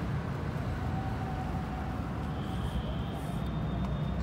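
Steady low outdoor background rumble, with a faint thin tone in the middle and a faint high tone in the second half.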